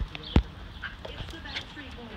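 A small rubber ball knocking on a concrete patio: one sharp hit about a third of a second in, then a few lighter taps.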